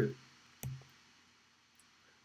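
A man's word trailing off, then one short click about half a second in with a brief low hum after it, then near silence.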